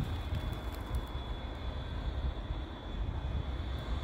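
Low, steady rumble of a distant approaching CSX freight train led by an ES44AH diesel locomotive, mixed with wind buffeting the microphone.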